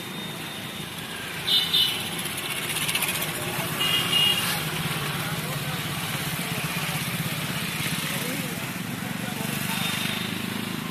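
A motor vehicle's engine running steadily, with two brief groups of shrill high-pitched blasts, about one and a half and four seconds in.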